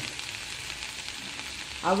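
Sliced bitter gourd and onion frying in oil in a nonstick pan: a steady soft sizzle with faint crackles as a spatula stirs them.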